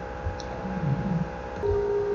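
A low, steady hum made of several sustained tones, which steps to a new, louder tone about one and a half seconds in.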